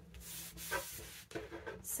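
Hands rubbing across paper, smoothing a sheet flat onto a paper envelope: a soft dry brushing hiss with a few strokes, easing off after about a second and a half.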